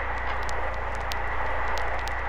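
Steady radio static hiss over a low hum and a faint steady high whine, broken by a few sharp crackling clicks: the open channel of a field radio transmission between calls.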